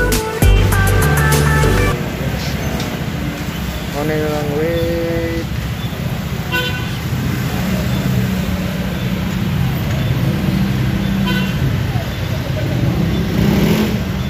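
Background music that stops about two seconds in, then traffic and engine noise, with a short car-horn toot about four seconds in.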